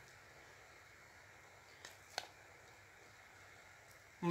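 Near silence, with two faint clicks about two seconds in: a metal spoon tapping a glass plate as cream is scraped off it onto rice.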